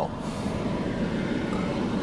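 Steady running noise of a car, heard from inside its cabin: a low, even hum with no sudden sounds.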